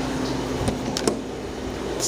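Steady low hum from a ThyssenKrupp Synergy hydraulic elevator running, with a few sharp clicks about a second in, after which the hum drops away.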